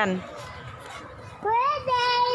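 A small child's long, high-pitched vocal sound about one and a half seconds in, rising briefly and then held on one note, after a short stretch of quiet background.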